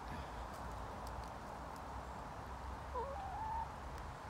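Domestic hens in a pen, one giving a single short call about three seconds in that dips and then holds a level note, with a few faint clicks earlier over a low steady rumble.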